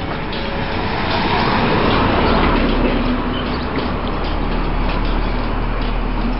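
Old split-window Volkswagen bus (Kombi) with its air-cooled flat-four engine running as it moves off, a steady rumble that swells about a second in and then holds.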